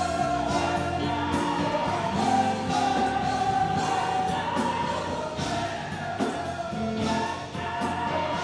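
Live gospel choir singing long held notes with instrumental accompaniment, the lead singer's microphone faint in the mix.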